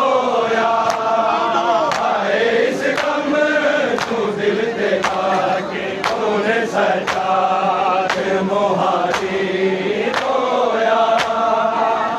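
Crowd of men chanting a Shia noha lament together, with a steady beat of chest-beating (matam) slaps landing roughly once a second.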